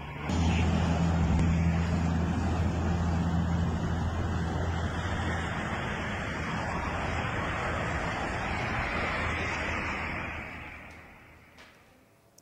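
Steady outdoor street noise from an amateur phone recording: an even rush with a low steady hum underneath, fading away near the end.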